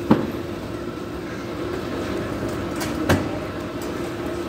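A fire truck's engine running steadily, with two sharp bangs from the burning house, one at the start and one about three seconds in: things in the fire exploding.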